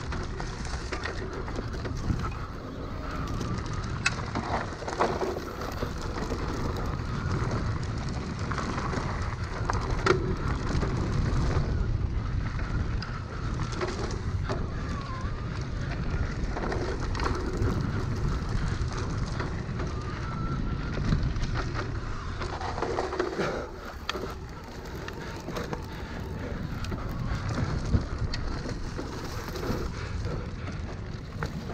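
Luna X2 electric mountain bike ridden fast down a dirt singletrack: steady rush of tyre and wind noise, with the crackle of tyres over dry leaves and dirt. Occasional sharp knocks from the bike going over bumps.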